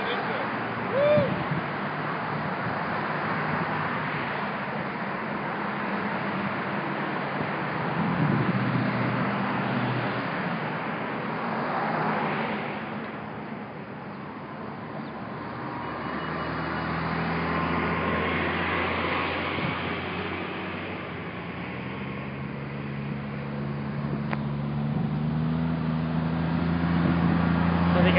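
Road traffic: cars passing in swells of tyre and engine noise. About halfway through, a vehicle's engine hum comes in and grows louder toward the end.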